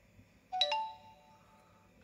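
A short electronic notification chime: a few quick stepped notes about half a second in, ringing out within a second.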